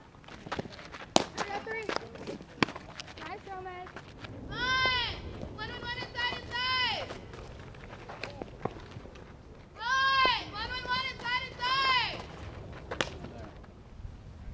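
Sharp smacks of a softball landing in a leather glove during throwing and catching drills, the loudest about a second in. Between them come two runs of high, pitched calls, each a long call followed by about four short ones.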